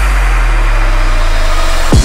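Dubstep track in a drumless break: a long held synth bass note sliding slowly down in pitch under a wash of noise, with an engine-like growl. A kick drum lands at the very end as the beat comes back in.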